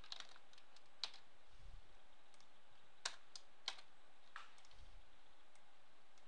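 Scattered keystrokes on a computer keyboard: a handful of sharp taps spread over the few seconds, the loudest about a second in and between three and four and a half seconds in, with a couple of soft low thuds.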